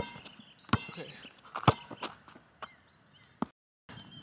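Basketball being dribbled on asphalt, bouncing about once a second, the last bounces fainter. The sound cuts out briefly near the end.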